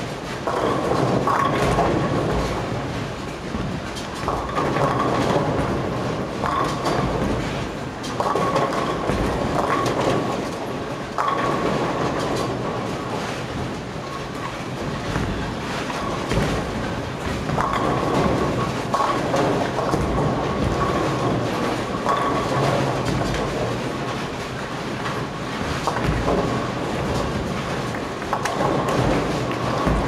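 Bowling alley din: balls rolling down wooden lanes with a steady rumble, and pins clattering now and then from many lanes at once, over the running pinsetter machinery. A steady whine runs through it all.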